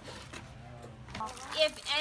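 Speech only: faint talk at first, then a woman starts speaking clearly just over a second in.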